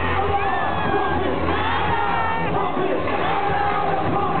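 Concert crowd cheering and shouting, with many voices whooping in rising and falling calls, busiest in the middle, over a steady deep bass from the music.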